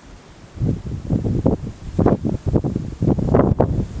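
Wind buffeting the camera microphone in irregular gusts, a low rumbling that starts about half a second in and grows stronger toward the end.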